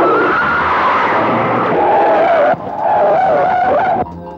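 Car tyres screeching in a long, wavering skid. The screech breaks off briefly about two and a half seconds in, starts again, then stops suddenly.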